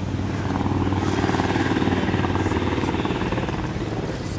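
A motor vehicle's engine running close by, a steady low throb that grows a little louder over the first second and then holds.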